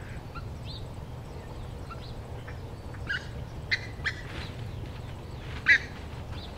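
Birds calling: scattered short chirps and calls, a cluster about halfway through and the loudest just before the end, over a steady low rumble.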